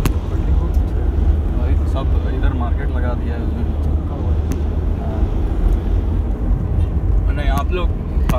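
Steady low rumble of a car's engine and tyres on the road, heard from inside the moving vehicle, with faint voices now and then.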